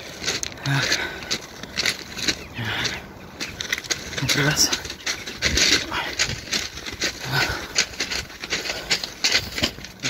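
Footsteps crunching on railway ballast stones as someone walks along the track, with a few short snatches of a man's voice.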